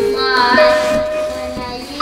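A child singing in a high voice, holding long notes, with music behind.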